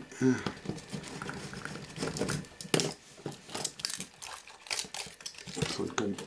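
Hands working at a video camera's circuit boards and wiring: scattered small clicks, rustles and crinkling as a connector is worked loose, with a couple of sharper clicks near the middle.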